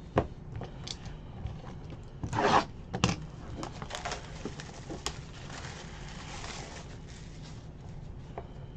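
Plastic shrink wrap being torn and stripped off a Panini Court Kings trading-card box, with one loud rip about two and a half seconds in, then softer crackling of the plastic.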